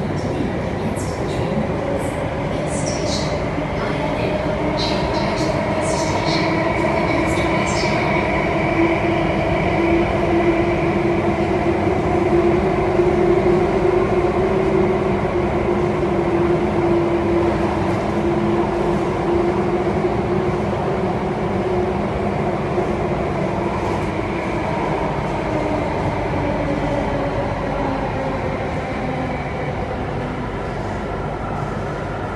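An Alstom Metropolis C830C metro train running between stations, heard from inside the car. Steady rumble of wheels and running gear with a whine that builds and climbs slightly, is loudest about halfway through, then eases down. A few brief high squeaks come in the first several seconds.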